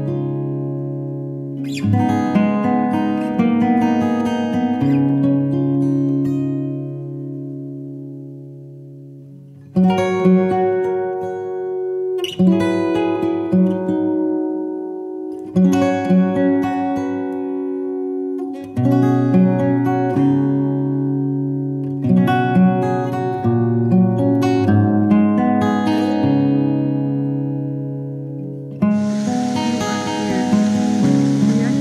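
Background music on acoustic guitar, plucked notes and strummed chords ringing out and fading. A steady hiss comes in near the end.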